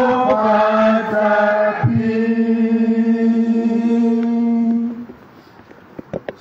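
Church congregation singing a hymn unaccompanied: several voices together hold long, slowly changing notes. The last note ends about five seconds in.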